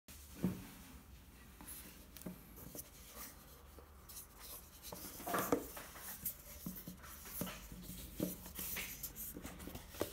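Hands handling a rigid cardboard gift box: faint rubbing and scraping of paperboard with scattered light taps as it is picked up, turned over and its lid pulled off, with a knock about half a second in and a louder scrape around five and a half seconds.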